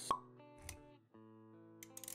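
Motion-graphics intro music with sound effects: a sharp pop right at the start, a low thump a little past half a second in, a brief drop-out at about one second, then held music notes returning with a few light clicks near the end.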